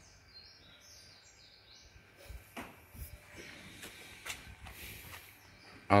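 Quiet background ambience with faint high chirps in the first couple of seconds, like small birds, and a few sharp clicks about midway.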